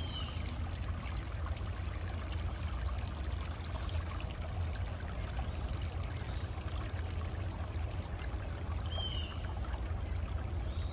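Shallow rocky creek babbling and trickling over stones, a steady wash of water noise. A short, high, falling chirp comes near the start and again about nine seconds in.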